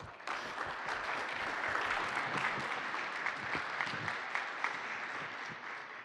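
Audience applauding: many hands clapping together, starting just after the beginning and dying away near the end.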